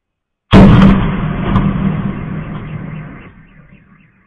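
A single loud explosion from a strike about half a second in, followed by a rolling rumble that fades away over about three seconds.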